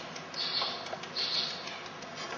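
Lemon rind being grated for zest: two rasping strokes of scraping, about half a second and a second and a quarter in.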